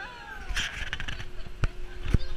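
A rider's high, whining voice sliding down in pitch at the start of a pirate-ship swing ride, then wind buffeting the camera microphone as the ship moves, with a sharp knock about a second and a half in.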